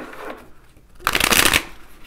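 A deck of tarot cards being shuffled by hand: soft card handling, then a loud, quick flurry of cards about a second in that lasts about half a second.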